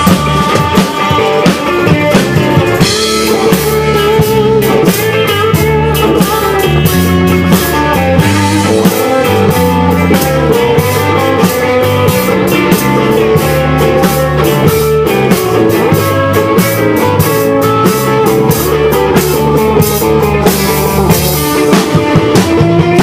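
Live blues band playing an instrumental passage: electric guitar over a steady drum-kit beat and a stepping low bass line, with no singing.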